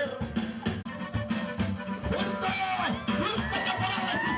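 Band music with a steady drum beat. High sliding tones rise over it in the second half.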